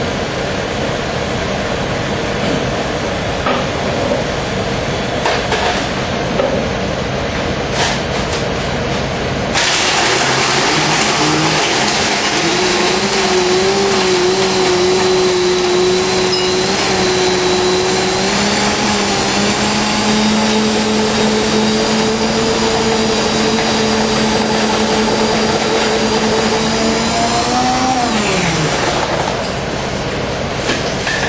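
Commercial countertop blender switching on about a third of the way in and crushing ice and fruit into a smoothie: a loud motor whine that climbs steadily in pitch as the ice breaks down and the load eases, then winds down and stops near the end. Before it starts, a steady background hum with a few light clicks.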